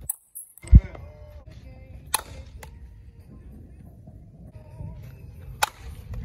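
A softball bat striking pitched softballs in a hitting drill: two sharp cracks about three and a half seconds apart. A heavy low thump just under a second in is the loudest sound.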